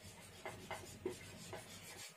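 Whiteboard marker writing a word on a whiteboard: a series of faint, short scratchy strokes.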